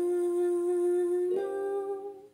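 A solo singing voice holding one long, steady note, then stepping up to a slightly higher note about a second and a half in.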